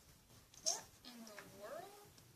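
A cat meowing: a short rising call, then a longer one that dips and rises in pitch. A brief sharp rustle lands with the first call.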